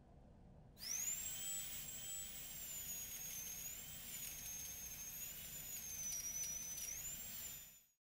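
Corded pen-shaped handheld electric tool whining at a high pitch as it cleans a wet stone sculpture. The whine comes on about a second in with a quick rise in pitch, wavers up and down, and cuts off just before the end.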